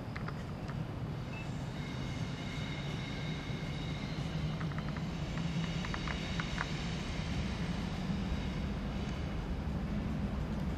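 A train running out of sight: a steady low rumble that grows slowly louder, with a faint high whine over it.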